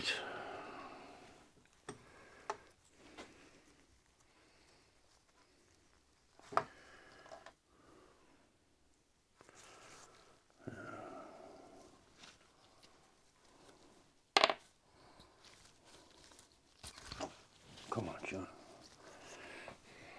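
Occasional light clicks and knocks of small metal engine parts being handled on a workbench, the sharpest a single click about two-thirds of the way through, with a few brief bursts of low muttering between them.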